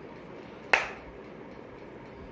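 A single sharp click or snap about three quarters of a second in, over a faint, fast, high-pitched ticking that repeats about five times a second.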